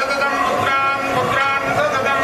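Hindu temple priests chanting Vedic blessing mantras, voices held on long, steady notes that step from pitch to pitch.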